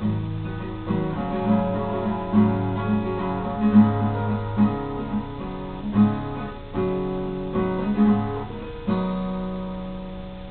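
Acoustic guitar strummed in a slow chord progression as an instrumental intro, with chord changes every second or so. A final chord struck near the end is left to ring and fade.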